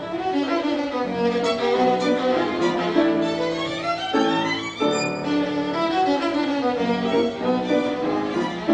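Solo violin playing a classical piece, with sustained notes and a long rising run near the middle.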